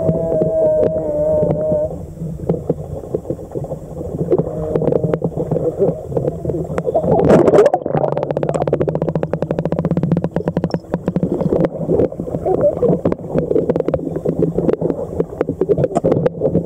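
Water sloshing and bubbling against an underwater camera housing as it dips below the surface and comes back up. There is a wavering tone in the first two seconds, a loud rush about seven seconds in, then a spell of fine bubbling crackle.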